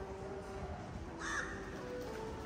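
A single short, harsh bird call about a second in, over a faint steady background.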